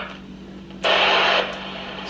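Fanon Courier crystal-controlled portable scanner's speaker hissing with static once the weather broadcast voice stops, with a louder rush of static about a second in that lasts about half a second.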